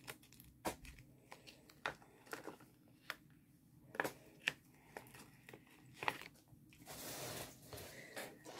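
Clear plastic bag crinkling and crackling as a diamond-painting pen is worked out of it by hand: a scatter of small sharp clicks, then a longer rustle near the end.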